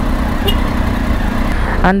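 Triumph Street Triple's three-cylinder engine running on its stock exhaust, a steady low rumble, as the bike moves off from a stop in traffic.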